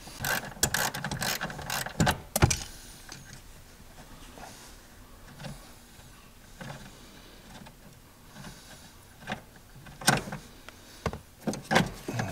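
Seat belt retractor being handled and worked loose from its mount in the pillar: a quick run of plastic and metal clicks and knocks, quieter fumbling, then more clicks about ten seconds in.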